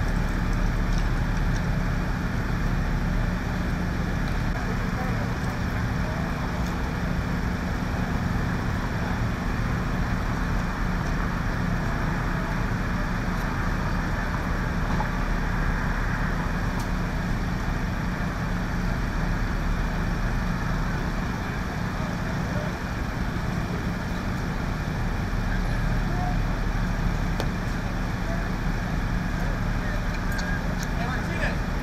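An engine runs steadily with a continuous low drone, under indistinct voices.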